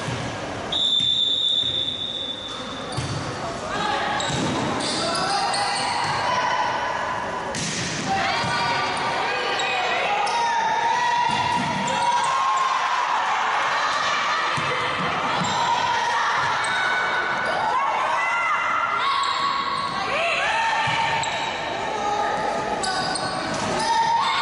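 A referee's whistle blows once, a single held note about a second in. Then a volleyball rally follows: the ball being struck, sneakers squeaking on the hardwood court, and players' voices calling out.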